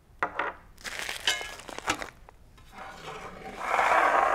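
Handling noises on a wooden tabletop: a plastic bag crinkling and a small brass fitting clicking down, then a louder scrape near the end as a stainless steel box is slid across the table.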